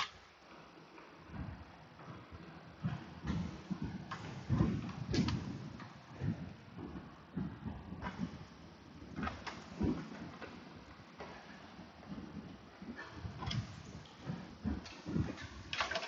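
Irregular light knocks, taps and scrapes of plastic parts and small fasteners being handled and fitted by hand as a motorcycle's air box cover is put back on, with a few louder knocks along the way.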